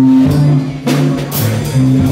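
Live jazz band playing: a bass line of held low notes moving in steps under a drum kit, with sharp cymbal hits about a second in, and guitar and keyboard in the mix.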